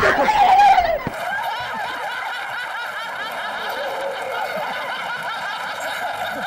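Several people laughing continuously, a dense run of overlapping laughs at a steady level that starts abruptly about a second in. It sounds thin, with no bass.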